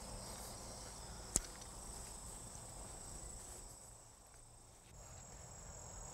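Faint, steady high-pitched trilling of insects over outdoor background hiss, with a single sharp click about a second and a half in.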